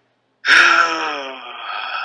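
A person's long, drawn-out vocal moan: it starts suddenly about half a second in and slides slowly down in pitch for about two seconds.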